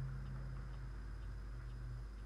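A pause with no speech: a steady low hum on the recording, strongest at first and slowly fading, with a few faint ticks.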